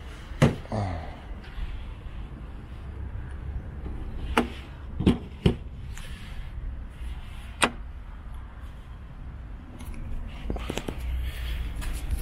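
Sharp clicks and knocks of a Tesla Supercharger connector being taken from its post and latched into a Model S charge port: a handful of separate clicks, three of them close together around the middle, over a steady low rumble.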